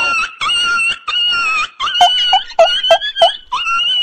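A very high-pitched, squeaky whining voice in short wavering phrases, with five quick falling chirps about two to three seconds in.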